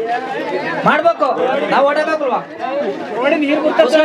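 Speech: several people talking in a crowd, with chatter around a man speaking into a handheld microphone.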